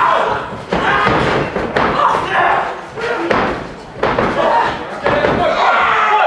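Heavy thuds on a wrestling ring about once a second, with shouting voices between them.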